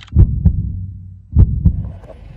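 Heartbeat sound effect: deep double thumps, lub-dub, twice, about a second and a quarter apart.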